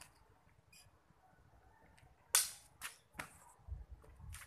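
Eskrima training sticks clacking together in sparring: three sharp strikes in quick succession about halfway through, the first the loudest, followed by a low thud near the end.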